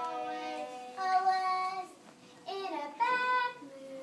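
A child singing long held notes in two phrases, with a short break about two seconds in.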